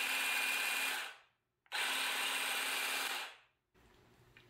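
Ryobi ONE+ 18V cordless grass shear running with nothing to cut, its motor and reciprocating blade making a steady sound. It runs in two spells of about a second and a half each, stopping for half a second between them.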